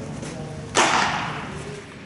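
A single sharp smack of a baseball about three quarters of a second in, ringing on in the echo of a large indoor hall.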